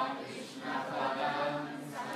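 A group of voices chanting a devotional prayer together, sung in unison with a steady melodic line.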